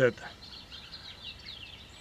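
Small birds chirping in a run of quick, high notes during a pause in speech, over faint outdoor background noise.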